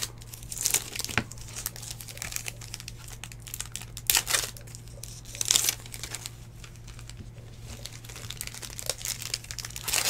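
Plastic wrappers of 2019 Bowman baseball card packs crinkling and tearing as packs are ripped open and the cards inside are handled, in short scattered bursts of rustling. A steady low hum runs underneath.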